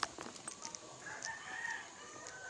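A rooster crowing once in one drawn-out call about a second in, over light clicking and handling noise.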